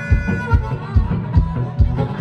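Rack-mounted harmonica played with strummed acoustic guitar in an instrumental blues break, over a steady low beat about two and a half times a second.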